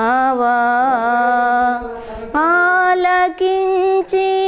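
A woman singing a Telugu Christian devotional song solo, holding long notes with small melodic turns. There is a short break for breath about two seconds in before the next phrase.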